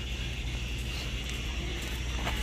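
Footsteps on a footbridge, a few faint steps over a steady low outdoor rumble.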